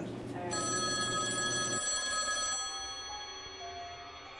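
Wall-mounted landline telephone ringing; the ring sets in about half a second in and eases off after about two seconds.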